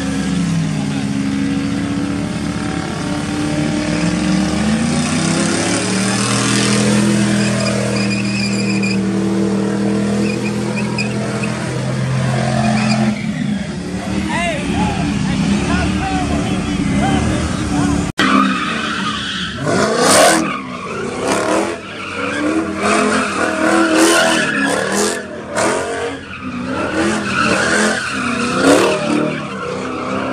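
Cars doing donuts: an engine held at high revs with tyres squealing, the note steady for the first dozen seconds. After a sudden cut about two-thirds of the way in, a crowd shouts over revving and screeching tyres.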